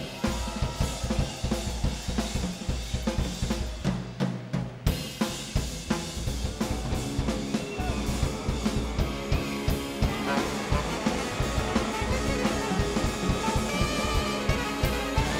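Live jazz drum solo on a Pearl drum kit: fast, busy strokes on snare, bass drum and cymbals. From about five seconds in, held notes from the big band build up under the drums, with the horns coming in near the end.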